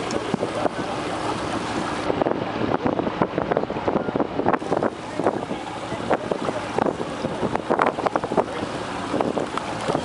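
Wind buffeting the microphone over water splashing and slapping irregularly around a Zodiac inflatable boat on the sea.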